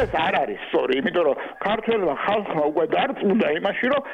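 Speech only: a person talking throughout, with no other sound.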